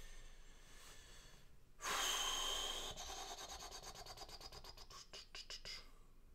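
A man's sudden heavy breath close to the microphone about two seconds in, followed by a soft, rapid rasping or rubbing that runs on until near the end.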